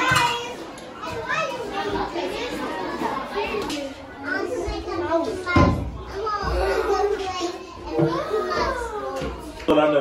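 Children's voices chattering and calling out as they play, with a single low thump about halfway through.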